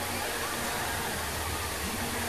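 The Magic Fountain of Montjuïc's many water jets shooting up and falling back into the basin, a steady rushing splash.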